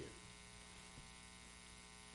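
Near silence with a steady electrical hum.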